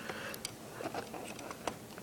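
A few faint, scattered clicks and taps of plastic LEGO pieces being handled as a wheeled part is slid into the launch pad.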